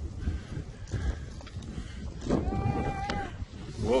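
Low rumble of wind on the microphone while skiing downhill, with a drawn-out high-pitched vocal squeal of about a second midway through and a short shout of 'whoa' at the end.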